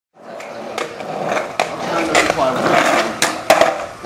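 Skateboard wheels rolling over rough pavement, a steady rumble broken by repeated sharp clicks as they cross cracks, with one louder clack about three and a half seconds in.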